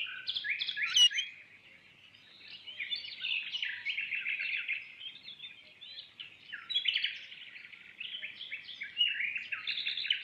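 Many small birds chirping and twittering busily, with a brief lull about two seconds in. About a second in there is one sharp click as the wrought-iron gate's latch is worked.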